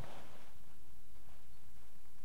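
Quiet outdoor ambience: a faint, steady low rumble with no distinct sound standing out.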